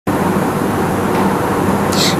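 Steady, loud background noise, an even hiss and rumble with no breaks or distinct events.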